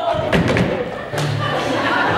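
A few heavy thuds of footsteps on a theatre stage floor, coming in short clusters, with low accompaniment music underneath.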